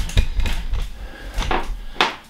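Handling noise as a camera is picked up and repositioned: a low rumble with several clicks and knocks.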